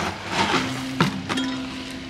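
A few sharp knocks and clinks from plastic buckets being handled and passed hand to hand, over a steady low hum that starts about half a second in.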